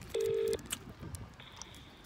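Outgoing call on a smartphone's loudspeaker: one short burst of a steady ringing tone, then the faint hiss of the phone line as the call connects.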